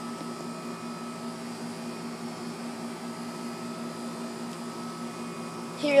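A steady machine hum with a constant low tone, unchanging throughout, with no distinct events.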